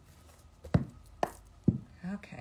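A deck of oracle cards knocked on end against a tabletop three times, about half a second apart.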